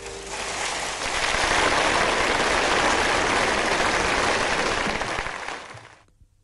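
Audience applauding. It swells over the first second as the last santoor note dies away, holds steady, then fades out just before the end.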